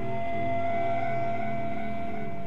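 Instrumental Armenian music: one long held melody note over a lower accompaniment of repeating notes.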